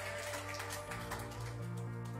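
Soft background worship music of sustained keyboard chords, moving to a new chord with a lower bass note about a second in.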